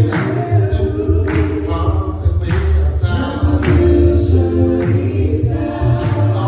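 A gospel vocal group of mixed male and female voices singing in harmony, a cappella, over a deep bass part, with a sharp beat accent about once a second.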